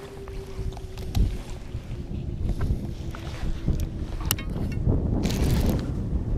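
Wind buffeting the microphone on an open boat, a low rumble that grows louder near the end, with a faint steady hum underneath for the first few seconds and a few small clicks.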